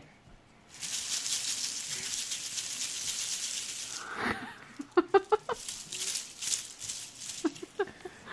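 Crinkly rustling of a shiny plastic curled-ribbon gift bow being handled and pressed onto a baby's head, in two stretches. Short bursts of soft laughter come in between.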